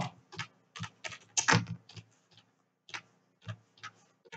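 Typing on a computer keyboard: about ten irregularly spaced key clicks, one louder stroke about one and a half seconds in.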